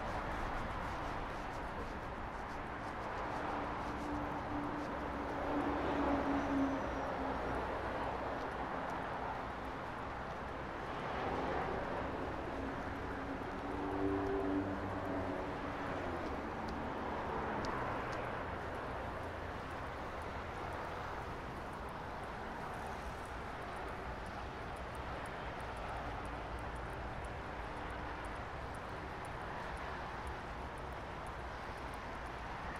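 Steady rumble of distant vehicles, swelling several times as something passes, with a faint humming tone during the louder swells.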